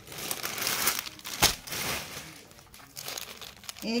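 Rustling and crinkling as a folded suit of crisp organza fabric is handled and laid out flat, with one sharp click about a second and a half in; the handling goes quiet after about two seconds.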